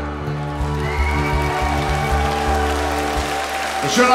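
Live pop band playing an instrumental stretch with no vocals: sustained chords held over a low bass note, which drops out shortly before the end.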